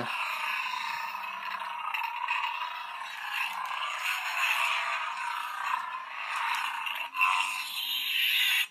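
Kylo Ren Disney FX toy lightsaber's sound effect from its small built-in speaker: a steady, unstable crackling hum, thin and tinny with no low end.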